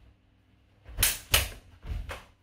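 Practice weapons, a spadroon and a dussack, clashing three times in quick succession about a second in, in a fast sparring exchange.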